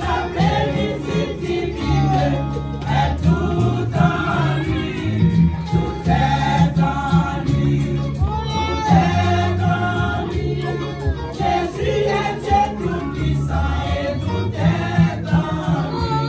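Women's church choir singing a gospel hymn together, over low sustained notes.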